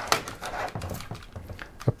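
Light handling noise of a power-supply cable being handled on a desk: soft rustling and a few faint irregular clicks, with one sharper click near the end.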